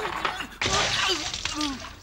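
Cartoon crash sound effect with breaking and shattering as someone tumbles into a kitchen sink. It starts suddenly about half a second in and lasts over a second.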